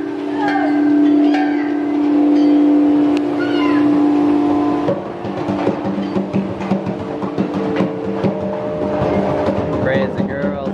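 Large metal chime tubes of a playground instrument ringing after mallet strikes: a long low tone with higher overtones, cut off suddenly about five seconds in. A small child's voice comes over the ringing.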